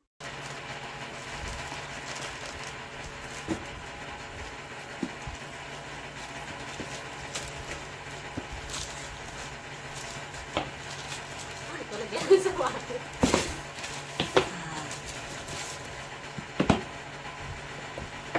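Plastic courier mailer bag rustling and crinkling as it is opened and cardboard shoe-style boxes are slid out and handled, with a few sharp knocks from the boxes, the loudest in the second half, over a steady low hum.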